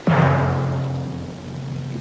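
Orchestral timpani roll cued by the performer, starting suddenly with a loud accent and held on one low note, slowly fading.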